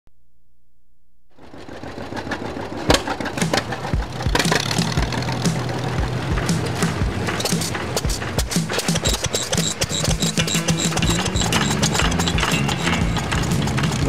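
Antique single-cylinder stationary gas engines running, with sharp firing thumps at an uneven beat a little over once a second, starting about a second in, mixed with music.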